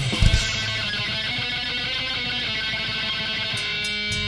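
Live heavy band's electric guitar ringing out held notes, after a few drum hits in the first half-second; the drums drop out and the guitar is left on its own.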